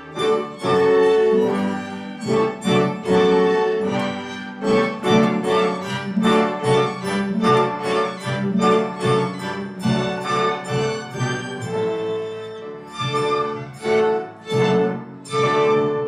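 School string orchestra of violins, cellos and double basses playing a rhythmic passage of short, accented chords, closing on a final chord right at the end.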